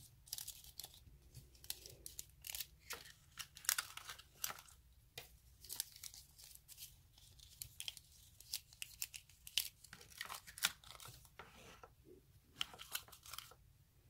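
Thin holographic nail transfer foil crinkling and rustling in quick, irregular crackles as the rolls are unrolled and handled.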